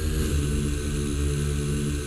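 Techno music in a drumless stretch: a sustained low synth drone of held tones with hiss above it and no beat.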